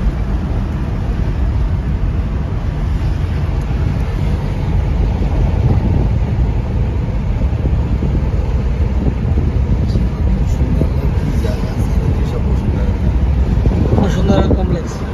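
Steady low rumble of road and engine noise inside a moving car's cabin, heard while driving at speed on an open road.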